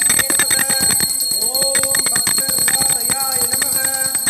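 A bell rung rapidly and without pause, its high ringing held throughout, under devotional chanting. A voice draws out rising sung notes about one and a half seconds in and again near the end.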